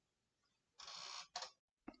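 Near silence: room tone, with a man's short, faint breath in about a second in and a few faint mouth clicks just after it.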